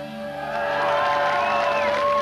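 Live rock band holding a long sustained note on amplified instruments, the audience starting to cheer and whoop over it as it swells about half a second in.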